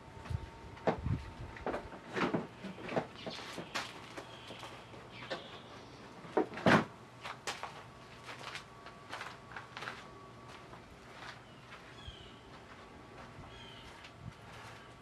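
Irregular knocks, clicks and clatters of hands and tools working the floorboard panels and fasteners of a John Deere 1025R compact tractor, with one louder knock about halfway through.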